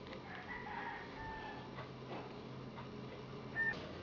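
A rooster crowing faintly, one crow of about a second and a half. Near the end comes a short beep.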